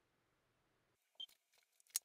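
Near silence, with a few faint clicks about a second in and one sharp click near the end.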